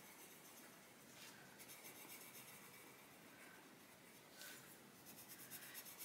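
Very faint scratching of a coloured pencil shading on paper, in short strokes.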